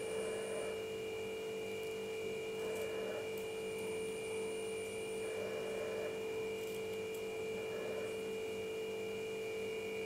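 A steady electrical hum with a higher whine above it. Faint soft crunches every two to three seconds come from scissors cutting through folded cotton cloth.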